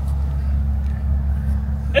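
A steady low rumble with no change in level; a single spoken word comes right at the end.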